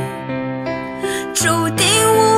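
Instrumental passage of a Mandarin pop ballad with no vocals: sustained chords, then a new chord about two-thirds of the way in, with a melody line that slides between notes.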